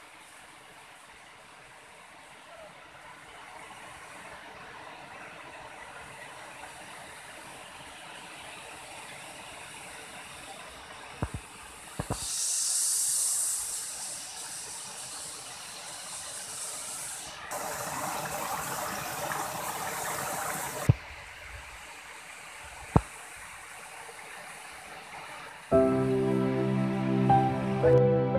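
Steady rushing of a tall waterfall. There are a few sharp clicks and two louder bursts of hiss, one about halfway through and one about two-thirds through.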